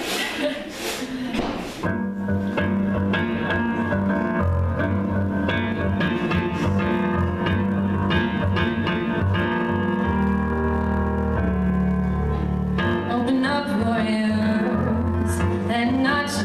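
Keyboard playing the intro of a song, held chords over a low bass line, starting about two seconds in.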